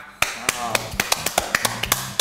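Two people clapping their hands, a quick run of sharp claps at about six or seven a second.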